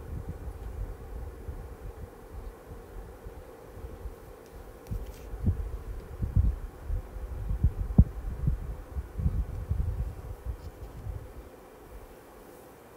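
Low, irregular thuds and rumbling from body and hand movement close to the microphone, strongest in the second half with one sharper knock about eight seconds in, over a faint steady hum.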